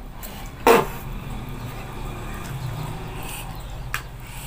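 A mouthful of noodles slurped up once, short and sharp about a second in, with a quick falling pitch, followed by a low steady hum.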